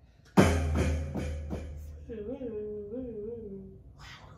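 Electronic beat: a sudden heavy bass-drum hit about half a second in, with a long deep bass tail and three or four more hits in quick succession. It is followed by a wavering, warbling pitched tone lasting about a second and a half.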